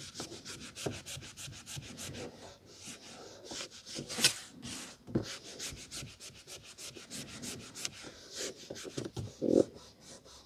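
A cloth rubbing across the glossy card cover of a vintage paperback in a run of short wiping strokes, one stroke just after four seconds louder than the rest. A soft thump near the end.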